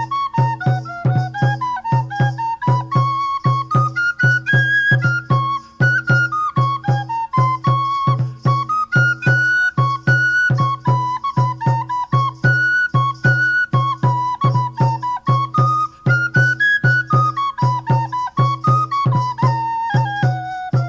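Instrumental English folk dance tune: a flute-like melody over a held drone and a steady drumbeat.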